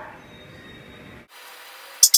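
Faint rubbing of a knife cutting through soft scone dough on a wooden board, with no distinct strokes, over low steady background noise that drops away abruptly a little over a second in.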